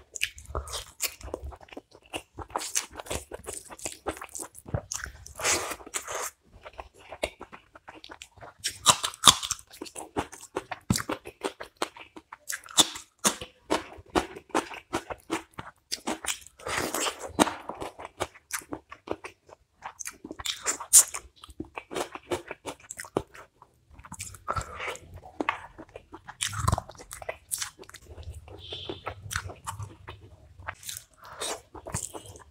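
Close-miked mouth sounds of a man biting and chewing roast chicken and mutton curry with rice, eaten by hand: irregular crunches and chewing, with brief pauses a couple of times.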